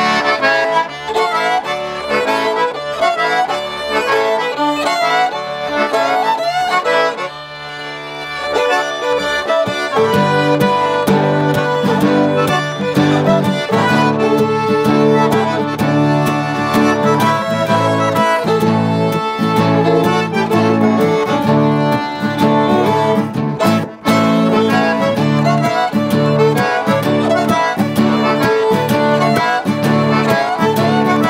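Cajun band playing an instrumental passage on button accordion, fiddle and acoustic guitars. The accordion leads, and the band comes in fuller and louder about ten seconds in.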